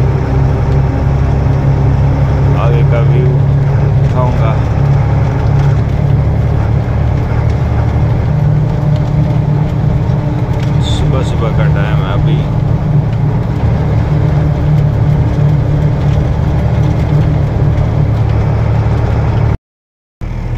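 Truck engine running steadily while driving, heard from inside the cab as a loud low drone. The sound cuts out abruptly for a moment near the end.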